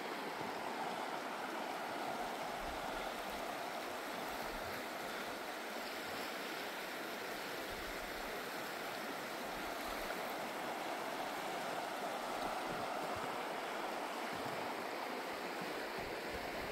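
A shallow, fast mountain river running over rocks: a steady, even rush of water.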